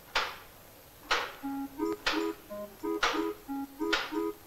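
Electronic film-score music: a short hiss-like percussion stroke falls about once a second, and about a second and a half in a melody of short synthesizer notes comes in over it.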